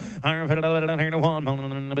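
Livestock auctioneer's bid-calling chant: a fast, steady-pitched sing-song run of filler words and bid numbers, here calling a hundred fifty-one, after a short breath at the start.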